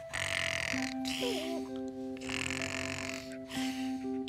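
A cartoon character snoring in bed: three breathy, hissing snores over soft, sustained music.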